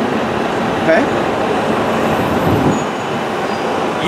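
Steady rushing noise of city street traffic, with a low rumble swelling and fading about two and a half seconds in as a vehicle passes.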